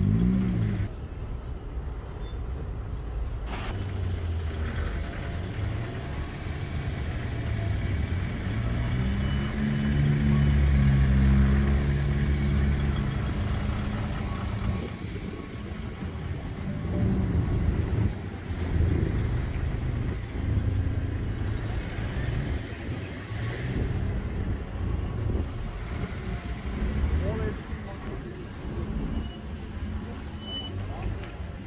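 Road traffic passing on a busy street, with one vehicle's engine running loudest and steadiest from about nine to fourteen seconds in, and voices in the background.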